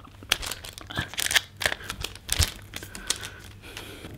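Sticky tape being torn and crinkled as it is wrapped around a wooden skewer at a balloon's knot, a run of irregular crackles and snaps.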